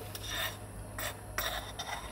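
A spoon scraping against a small container in a few short strokes.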